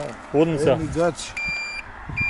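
Electric moped's turn-signal buzzer beeping as the blinkers are switched on: a steady, high-pitched beep begins past the middle and lasts about half a second, and the next beep starts right at the end.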